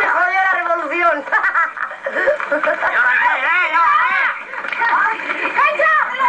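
Voices calling out in Spanish throughout, the words not made out, played through a television's speaker.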